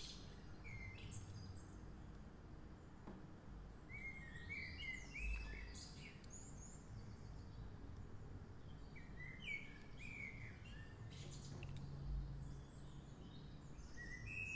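Faint bird chirps, heard in short clusters a few times, over a low background rumble.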